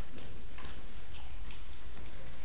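A few light, uneven knocks and clicks of objects being handled on a wooden pulpit, over a steady low rumble.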